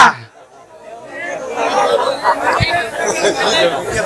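Several people talking at once, indistinct and well below the main speaking voice. The chatter starts about a second in after a brief lull and carries on steadily.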